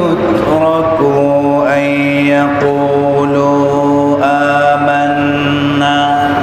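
A man reciting Quranic verses in Arabic in a melodic, chanted style, holding long notes that slide slowly in pitch.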